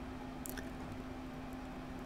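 Quiet room tone with a steady low hum, and one faint short click about half a second in.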